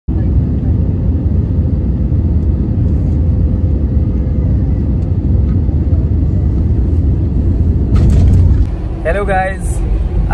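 Jet airliner cabin noise heard from a window seat over the wing during landing: a loud, steady low rumble of engines and airflow, which swells briefly louder and harsher near the end before cutting off. A man's voice follows in the last second.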